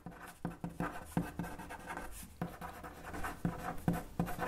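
A pen scratching across paper as words are handwritten: quick, irregular strokes in a steady run.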